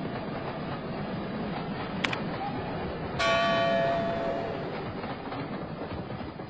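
OO gauge model train running along the layout's track, a steady rumble of motor and wheels. There is a sharp click about two seconds in, then a little after three seconds a sudden bell-like chime that rings out and fades over about a second and a half.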